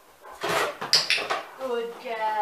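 A Great Dane stepping into an open cardboard box: about a second of cardboard crackling and knocking under its feet. A woman's voice follows near the end.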